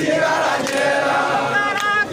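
A crowd singing together in unison, the voices holding long notes.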